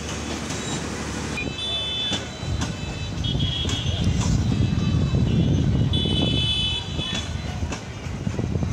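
Intercity passenger train rolling slowly along the track, with a low rumble that builds from about two and a half seconds in. A few brief high-pitched ringing tones sound over it.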